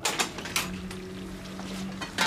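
Café room tone: a steady low hum, like a fridge or extractor, with a few sharp clicks and knocks in the first half second.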